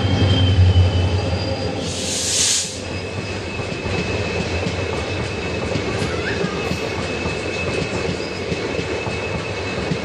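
An EMD WDP-4D diesel locomotive passes close by on the adjacent track, its engine drone loudest in the first second. A brief hiss follows about two seconds in, then the steady rumble and clatter of its passenger coaches rolling past, with a thin steady wheel squeal.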